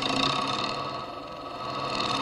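Electro-acoustic noise composition: a dense, sustained cluster of many steady tones over a hiss. It dips slightly in level about halfway through and swells again toward the end.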